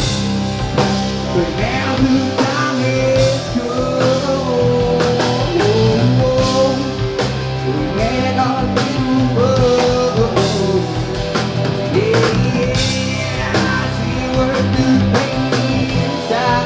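Live rock band playing: electric guitars, electric bass and drum kit, with a melody line sliding and bending in pitch over steady low bass notes.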